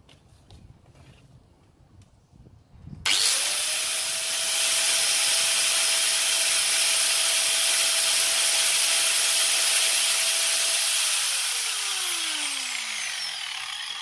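An electric power tool's motor, plugged in as the meter's load, switched on about three seconds in: it whines up to speed almost at once, runs steadily and loudly for about eight seconds, then is switched off and winds down with a falling whine. A few faint clicks from handling the meter's terminal screws come before it starts.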